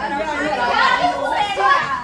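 Speech only: several people talking over one another in an argument.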